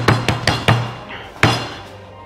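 A metal meat mallet pounding a frozen-style pizza on a wooden cutting board: four sharp blows, the last a little apart from the others.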